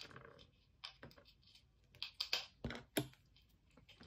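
Irregular light clicks and taps of wooden pencils being handled, knocking against each other and set down on a sketchbook, with a couple of heavier knocks about three seconds in.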